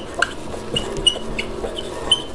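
Felt-tip marker squeaking on a whiteboard as a word is written: a series of short, high squeaks, several a second.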